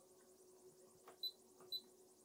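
Two short high beeps from the Siglent SDS1104X-E oscilloscope's key beeper, about half a second apart, as its cursor controls are worked; otherwise near silence with a faint steady hum.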